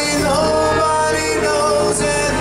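Live band playing an instrumental passage: grand piano, saxophone and electric guitar, with sustained melody notes and a short slide in pitch just after the start.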